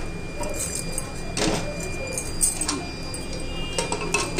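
Aluminium pressure cooker and its lid being handled on a gas stove: a few scattered metallic clinks and knocks, the loudest about a second and a half in.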